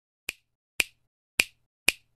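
Four crisp finger snaps, evenly spaced about half a second apart, as a sound effect in an intro.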